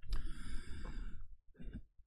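A man's long audible exhale, like a sigh, followed by a short breath in near the end, just before he speaks again.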